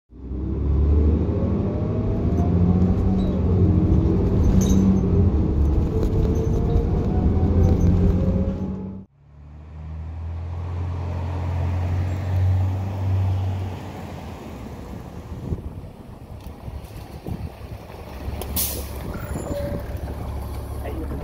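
A diesel city bus accelerating, its engine and transmission whine rising in pitch several times, which cuts off suddenly about nine seconds in. Then an NFI D30LF transit bus with a Cummins ISC diesel approaching and slowing down, its rumble fading, with a short air-brake hiss near the end.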